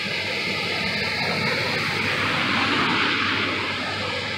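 A car driving through deep flood water, its wheels throwing up spray: a rushing hiss of water that swells and then fades as it passes.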